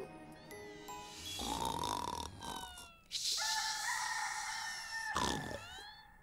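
Cartoon soundtrack: soft music with a snoring sound effect from a sleeping character about a second and a half in, then brighter sustained music tones.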